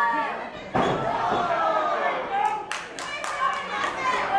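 A single heavy thud of a body hitting the wrestling ring about three quarters of a second in, followed by crowd members shouting in reaction, with a few sharp claps near the end.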